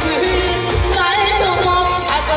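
A woman sings a Korean trot song into a microphone over a backing track with a steady bass beat. Her voice carries a wavering vibrato.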